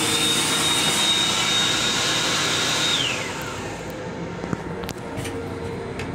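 Electric hand dryer running: a high steady motor whine over a rush of air, which winds down and stops about three seconds in.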